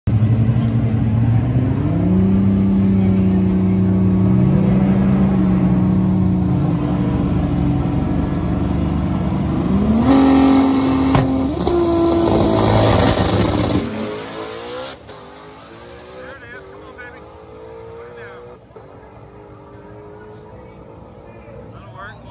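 Fox-body Mustang drag car's engine held at steady high revs on the starting line, stepping up once about two seconds in. About ten seconds in the note jumps as the car launches and runs very loud for a few seconds. It then falls away quickly, the faint pitch climbing again several times as the car pulls down the track.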